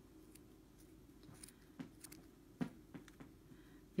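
Small crochet scissors snipping through the yarn of a pom-pom: about half a dozen faint, irregular snips. The scissors are not up to cutting through the thick bundle of yarn.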